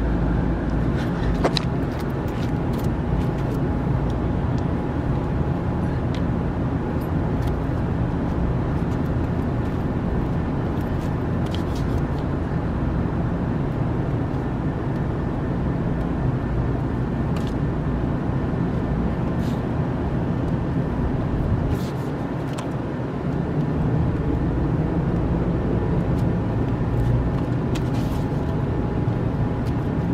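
Steady low outdoor rumble with a faint steady hum over it and a few faint ticks; it dips briefly about three-quarters of the way in.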